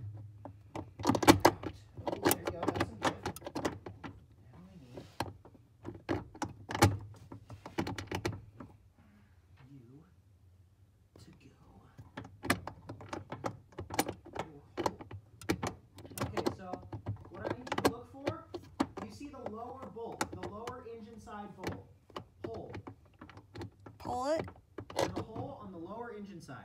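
Scattered clicks, taps and knocks of metal parts being handled under the dashboard as a clutch master cylinder is worked into place around the brake booster. Low, indistinct voices come in during the second half.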